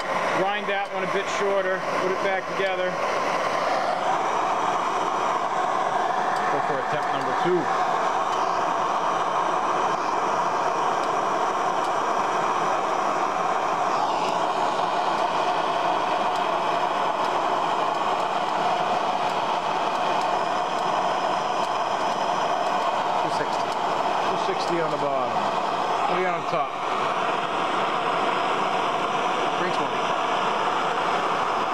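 Steady hissing rush of a handheld gas torch flame playing on a metal rear-drive hub, heating rusted, seized Allen screws so they will break loose.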